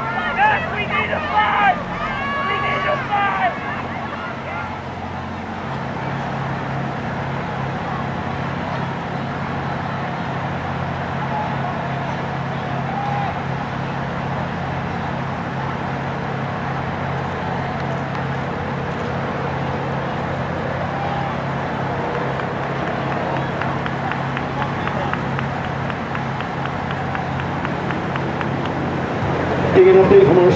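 Spectators' voices and shouts beside a cross-country course in the first few seconds, giving way to a steady low hum under a faint murmur of voices.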